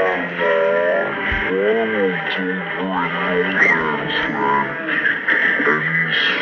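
A commercial jingle: a voice singing held, gliding notes over guitar-backed pop music.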